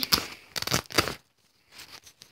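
Rustling and scraping handling noise, a few short bursts in the first second followed by faint scattered clicks, as toys and the phone are moved about.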